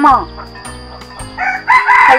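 A rooster crowing: one long, wavering, high-pitched call that starts a little past the middle, over steady background music.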